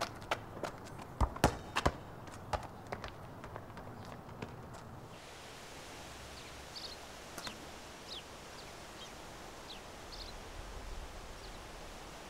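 A soccer ball being kicked and bounced on asphalt: a string of sharp thuds over the first few seconds, the loudest about a second and a half in. After that comes a steady outdoor hush with a few short, faint bird chirps.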